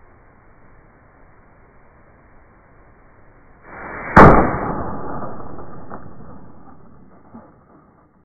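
A single gunshot about four seconds in, a Smith & Wesson .500 Magnum round striking a Level IIIA soft armor insert. It sounds dull and muffled, with a short swell just before the crack and a long fading tail.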